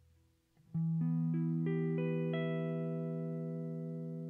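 Music: a clean guitar picks a chord one note at a time, about three notes a second, each left ringing so the chord builds up and then slowly fades. It enters after a brief near-quiet moment at the end of the previous chord.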